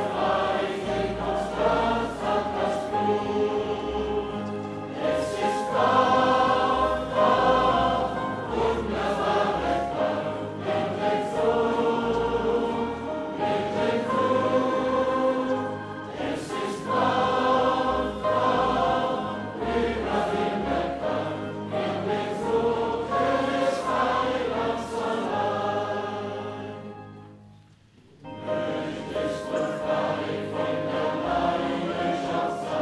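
A large congregation singing a hymn together in slow, held notes. The singing dies away briefly near the end, then starts again with the next line.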